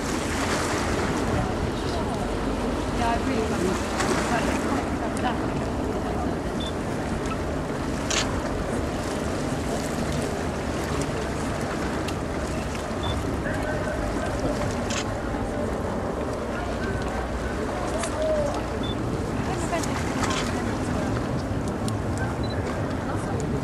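Open-air waterfront ambience: steady wind noise on the microphone and water lapping, with faint background voices and a few light clicks.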